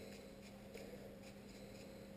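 Faint, irregular scratching and small clicks of a detachable clipper blade being handled and worked over with a small tool, over a steady low hum.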